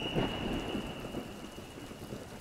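Steady rain with a low rumble, slowly fading, and a thin high tone that dies away about a second in.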